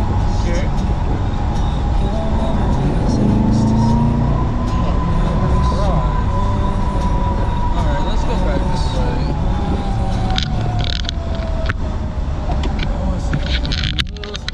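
Wind and road noise in a moving open-top Corvette convertible, with the car's V8 engine running underneath.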